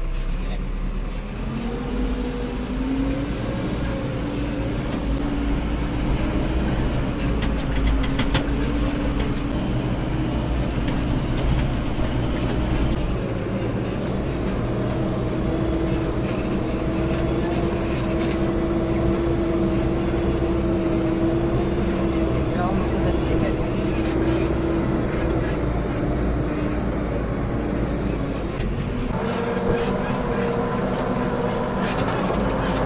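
A JCB backhoe loader's diesel engine running, heard from inside the cab. Its pitch rises a couple of seconds in and again around the middle as it revs, holds high for several seconds, and drops back near the end.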